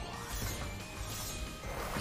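Online slot game music with the game's clattering sound effects as symbols tumble and drop into the reels during a bonus round.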